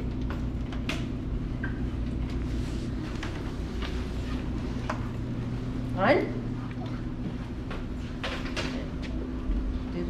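A steady low hum of machinery with scattered small clicks and knocks. A short spoken phrase rises in pitch about six seconds in.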